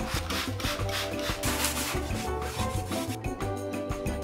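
Cloth wiping the inside of a wooden drawer in quick, repeated rubbing strokes that stop about three seconds in, over background music.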